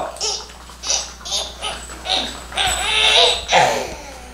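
Laughter in a run of short breathy bursts, with a longer burst about three seconds in.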